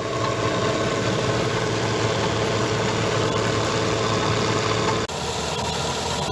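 Bizon Super Z056 combine harvester's diesel engine and threshing machinery running steadily while it harvests wheat, a continuous low drone. About five seconds in the sound drops out for an instant and resumes slightly changed.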